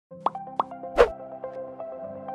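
Intro logo jingle: two short plops, then a louder hit about a second in, over held electronic synth notes.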